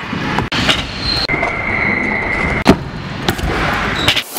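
Scooter wheels rolling over skatepark ramps and floor, with one sharp clack about two-thirds through and a few lighter knocks. A steady high tone sounds for about a second in the middle.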